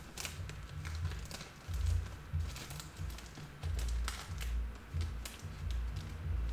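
Background music with a low, stepping bass line, with scattered light clicks and crinkles of objects being handled.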